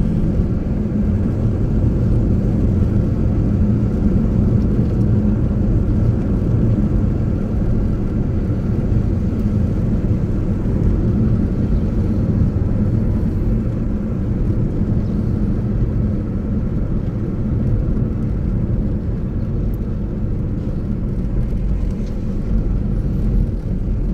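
A car driving at a steady pace, its engine and tyre noise heard from inside the cabin as a deep, even rumble that barely changes.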